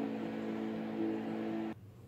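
A steady hum of several held low tones that cuts off suddenly near the end.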